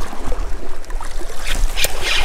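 Wind rumbling on an outdoor microphone over moving sea water, with a few small clicks late on as the spinning rod and reel are struck into a biting wrasse.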